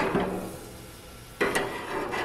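Metal spatula clacking and scraping against the grill's metal grate as sandwiches are slid onto it: one sharp clack at the start and another about a second and a half in.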